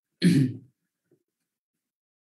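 A man clears his throat once, briefly, a moment into the pause.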